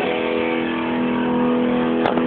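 Epiphone Sheraton II electric guitar letting a held note ring out steadily, recorded through a phone's microphone so the sound is dull and thin at the top.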